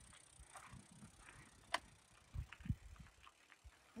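Gravel bike rolling over a loose gravel track: faint tyre crunch, with a sharp click near the middle and a few low knocks from the bike over the bumps.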